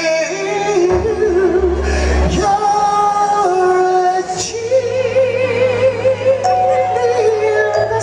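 A male R&B singer singing a slow soul ballad live with a band, drawing out long notes with vibrato over a steady bass line.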